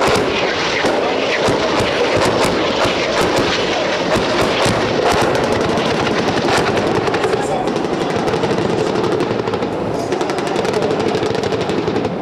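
Automatic weapons fire in long bursts of rapid, sharp shots, with rounds striking the sea. The shots are densest for the first seven seconds or so and come more sparsely after that.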